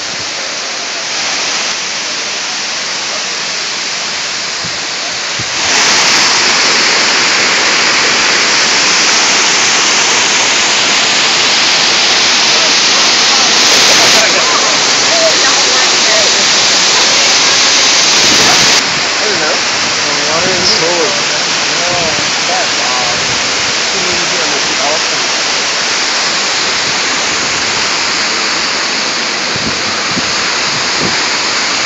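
Kuang Si Falls: the loud, steady rush of a waterfall, growing louder about six seconds in and easing back a little near the two-thirds mark.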